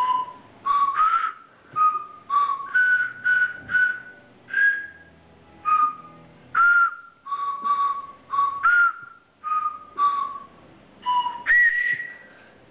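A set of single-note Christmas-cracker pitch whistles blown in turn, each a different note, picking out a tune: about twenty short, breathy toots in quick succession, ending on a longer, higher note.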